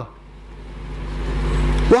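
A vehicle engine's low rumble growing steadily louder, then cutting off suddenly near the end.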